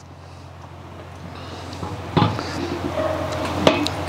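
Metal dome lid of a charcoal bullet smoker being lifted off and set aside, with a knock about two seconds in and a sharp clack near the end.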